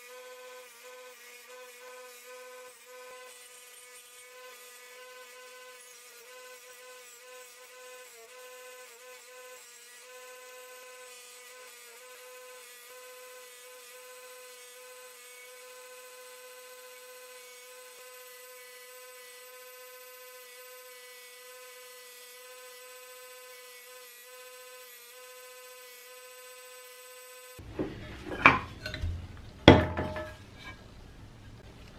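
Peugeot bench grinder running at a steady speed with a polishing wheel, a quiet, even whine as a metal lantern part is held against the wheel. Near the end the whine stops and two loud knocks follow, a second or so apart.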